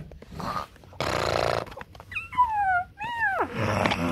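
A cat meowing twice: two drawn-out calls that fall in pitch, the second arching up then dropping steeply at its end, after a short rush of noise about a second in.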